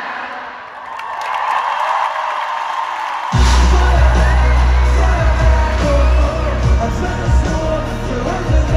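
Arena crowd cheering and singing along, swelling for about three seconds. Then the full live pop band comes in all at once, loud, with heavy bass and drums and singing over it, and confetti cannons fire with a bang as it drops.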